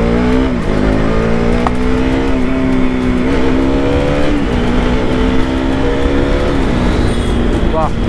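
KTM RC 200's single-cylinder four-stroke engine pulling under acceleration. The engine note climbs and then drops back four times as the rider shifts up through the gears, over steady wind and road rumble.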